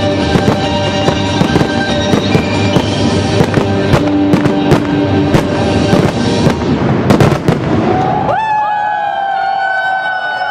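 Aerial firework shells bursting in rapid succession over music, building to a dense, loud cluster of bangs about seven seconds in. The bangs stop about eight seconds in, leaving held, wavering voices of a crowd cheering.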